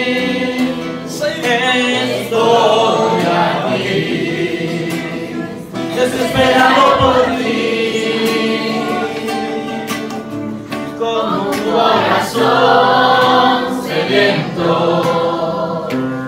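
Men singing a Portuguese-language worship song in several voices, accompanied by a strummed nylon-string acoustic guitar.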